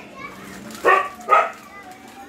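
A dog barking twice, about half a second apart.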